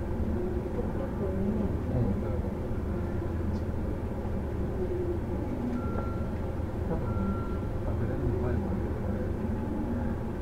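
Steady low rumble inside a JR 313 series electric train car, with passengers' voices faintly in the background. Two short high tones sound about six and seven seconds in.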